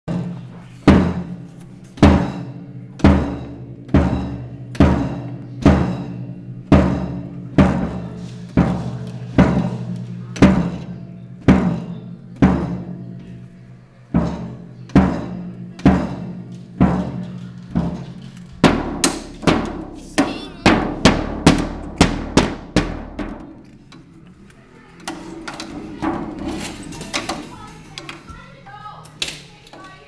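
A child hitting a drum kit with sticks, single strikes about once a second. Past the middle comes a quicker flurry of hits lasting a few seconds, then the drumming stops.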